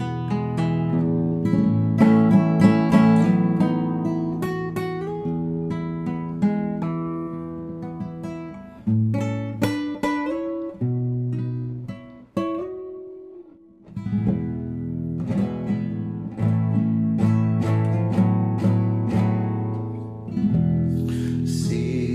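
Nylon-string classical guitar played solo, fingerpicked chords and melody notes ringing over held bass notes. About twelve seconds in the playing thins to a few notes that die away, then full playing resumes about two seconds later.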